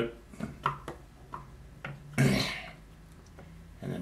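Light clicks and taps of a small sculpting tool working flat strips of clay on a wooden bench, with one louder short noise about two seconds in.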